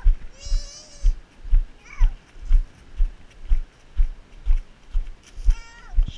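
Heavy footsteps close to the microphone at a steady walking pace, about two a second. Over them a toddler's high-pitched vocalizing: a long, warbling squeal near the start, a short falling cry about two seconds in, and another high call near the end.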